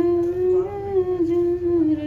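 A woman humming a slow tune without words: long held notes that step gently down in pitch.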